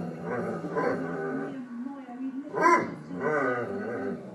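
A Weimaraner puppy and its older sister growling and barking at each other in play, with one loud bark about two-thirds of the way in.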